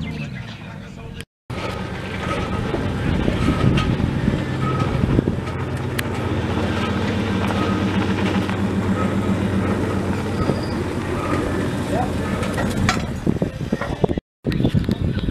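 A race pickup truck's engine idling steadily with a regular pulsing beat.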